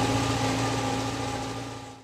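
Tractor diesel engine running steadily, heard from inside the cab, with a constant low hum; it fades away near the end.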